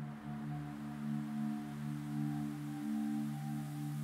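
Background meditation music: a steady drone of several low held tones, wavering slightly, with no strikes or breaks.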